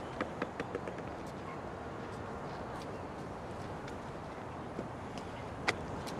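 Steady outdoor urban background noise, with a few faint taps in the first second and a single sharp click near the end.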